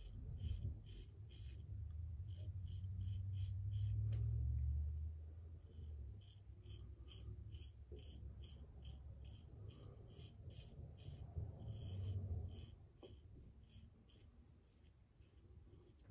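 Double-edge safety razor (Vikings Blade Chieftain with a Gillette Nascent blade) cutting through long stubble in short, light strokes: faint rapid scratches, about three a second, in runs with brief pauses.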